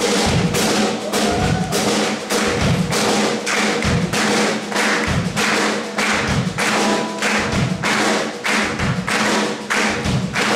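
Live acoustic folk-rock music: acoustic guitar strummed in a quick, steady rhythm, with a thumping percussive beat on each stroke.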